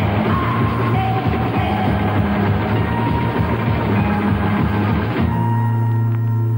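A 1960s garage-rock record playing, with a full band and drum kit. About five seconds in the band stops and a held chord rings on.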